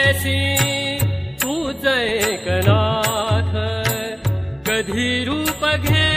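Instrumental passage of a Marathi devotional song: a bansuri flute melody with gliding, ornamented notes over tabla strokes.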